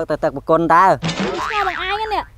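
People talking in Khmer. About a second in, a brief noisy sound with gliding pitch overlaps the voices.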